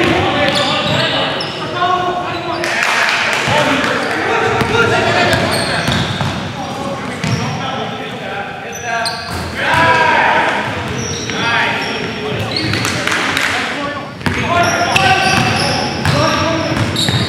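Live sound of an indoor basketball game: a ball bouncing on the hardwood court and sneakers squeaking, with players' indistinct voices ringing in the large gym hall.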